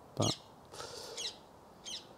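Birds chirping outdoors: a few short, high chirps about a second in and one more near the end.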